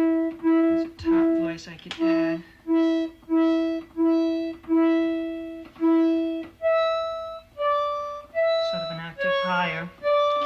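Moog modular synthesiser playing short test notes about every 0.6 s with a reedy, clarinet-like tone, each note striking sharply and fading, while the sound is being shaped. The first six seconds repeat one note, then the pitch moves between a few higher notes; a voice murmurs briefly twice.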